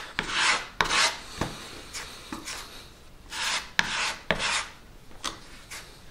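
A metal filling knife scraping and spreading wood filler paste across a wooden block in a series of irregular strokes, mixing two colours of filler together.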